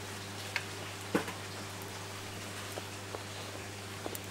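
Steady hiss of running water with a low hum from the tank pumps and water flow, and two light knocks about half a second and a second in as a plastic bucket of water is lifted and moved.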